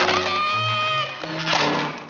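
A cartoon cat character's frightened wail: one long held note that stops about a second in. Orchestral cartoon score plays throughout, swelling brightly near the end.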